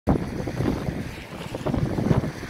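Wind buffeting the microphone in uneven gusts, a rumbling noise with no speech in it.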